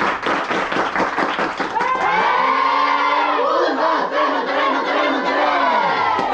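Group of women players clapping fast in unison in a huddle, then, about two seconds in, breaking into a loud group shout and cheer that carries on.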